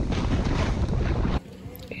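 Wind rushing over a boot-mounted GoPro's microphone, mixed with the snowboard sliding through snow on a downhill run, a steady loud rush that cuts off suddenly about one and a half seconds in.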